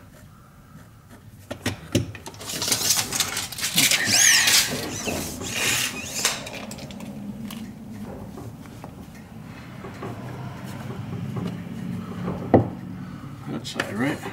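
Handling noise of wood pieces and tools being moved about: scraping and rustling, loudest from about two to six seconds in, then a sharp knock near the end.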